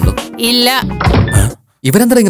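Film soundtrack: a voice over background music, with a thud. There is a brief gap of silence shortly before the end.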